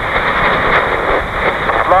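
Steady rushing cockpit noise of a Cessna 152 Aerobat in a spin, its engine and airflow heard as a thin, tinny hiss over the aircraft's radio.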